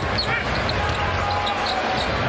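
Basketball arena ambience: steady crowd noise, with a basketball being dribbled on the hardwood court.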